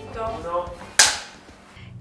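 Film clapperboard snapped shut once: a single sharp clack about a second in that fades quickly.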